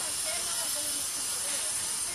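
Steady outdoor hiss with faint, distant voices of players calling across the practice nets.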